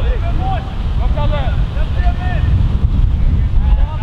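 Wind buffeting the microphone with a heavy, continuous rumble, over faint, distant shouts of players calling out on the pitch several times.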